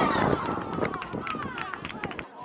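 Several voices shouting, rising and falling in pitch, during a goalmouth scramble in a football match, with a few sharp knocks among them.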